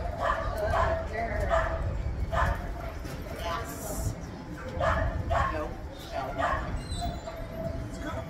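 A dog barking repeatedly, in short separate barks about once or twice a second.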